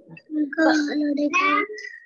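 A child's voice in a drawn-out, sing-song tone, heard over an online video call, with one note held for about a second.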